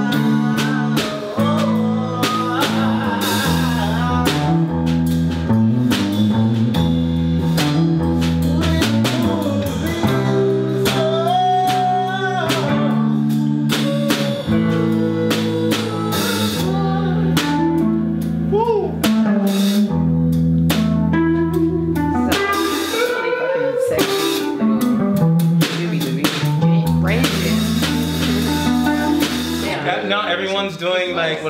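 Live band playing a blues-rock groove together on drum kit, electric guitar and keyboard, with long held low notes under the drums.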